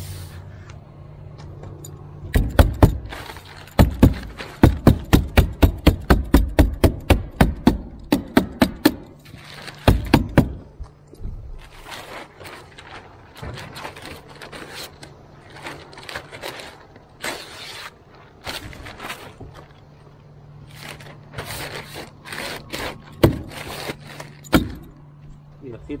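Roofing underlayment being fastened to the roof deck: a quick run of sharp, evenly spaced strikes, about three a second, for several seconds. Scattered single strikes and rustling of plastic sheeting follow, over a steady low hum.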